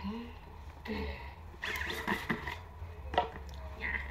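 A woman's voice says a short word, followed by a stretch of rustling and clatter and a few sharp knocks, as objects are handled close to the microphone.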